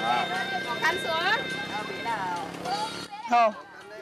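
Voices calling out and talking over background music with long held notes. The music cuts off abruptly about three seconds in, followed by a short, loud vocal exclamation.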